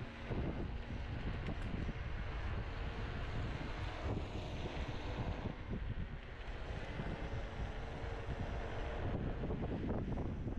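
Wind buffeting the microphone over a steady low rumble of a Kaabo Mantis 10 Pro electric scooter's tyres rolling on a concrete path while it is ridden at speed.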